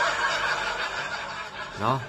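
A man's long breathy exhalation, a rush of air through the lips lasting about two seconds. Near the end his voice starts into speech.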